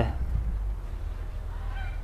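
A brief, faint honking bird call about one and a half seconds in, over a low steady rumble.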